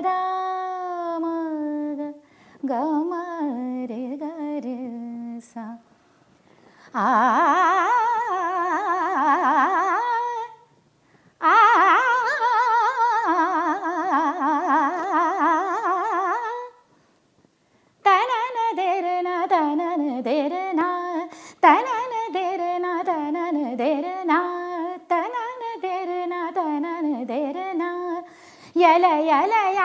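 A woman sings a Hindustani classical tarana unaccompanied, in long ornamented phrases with quick turns of pitch, pausing briefly between phrases.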